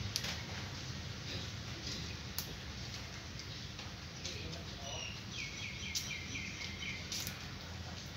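Cats eating rice from a metal tray, with chewing and a few sharp clicks. A bird chirps, with single notes about four seconds in and a quick run of about eight short notes from about five to seven seconds.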